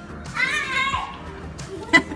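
A small child's high voice calling out for about half a second, over faint background music. There is a sharp click near the end.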